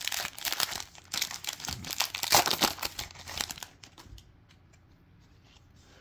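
A foil Topps Chrome trading-card pack wrapper being torn open and crinkled by hand, a dense crackle that stops about three and a half seconds in.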